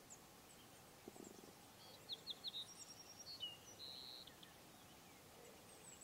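Faint songbird song: three quick high chirps about two seconds in, then a short run of whistled and trilled notes that stops about four and a half seconds in.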